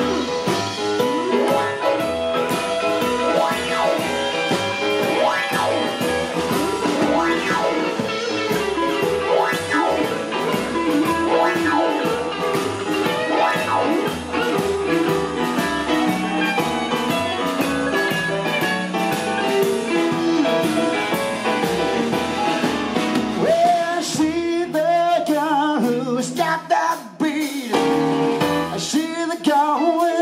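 Live band music with singing: electric guitar, upright double bass and drum kit. About 24 seconds in, the deep bass drops away and the sound thins to wavering held notes.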